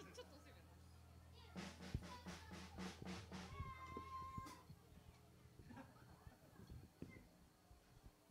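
Near silence: a faint steady hum from the stage sound system, with a short run of faint pulses about three a second in the first half and a brief high call held on one pitch just after.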